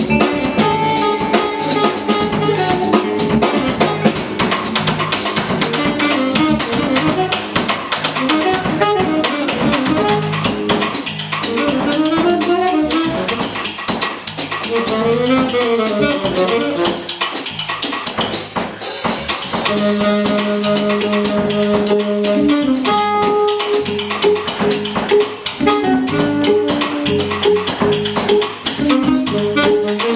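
Live jazz quartet playing: saxophone lines over electric guitar, bass guitar and drum kit.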